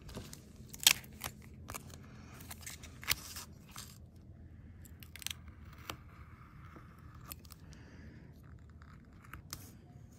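Thin metal foil tape crinkling and clicking as it is handled, with the sharpest clicks about one and three seconds in, then a quiet steady scratching as a metal embossing stylus is drawn along the foil.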